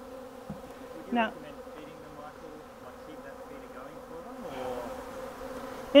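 Honey bees buzzing as many of them fly around a hive just stocked from a package, a steady hum that swells a little near the end.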